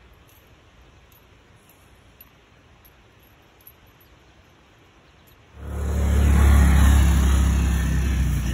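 A faint steady hiss with a few light ticks. About five and a half seconds in, a sudden loud rush of wind and rain noise hits the microphone, heavy and rumbling in the low end, and carries on to the end.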